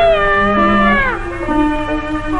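Old Cantonese opera record: a high melodic line holds a long note that bends, then slides down about a second in, over lower held accompanying notes.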